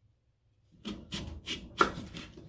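Kitchen knife slicing down through a raw apple on a wooden cutting board: a run of about five short crunching strokes starting about three-quarters of a second in, the loudest near the end.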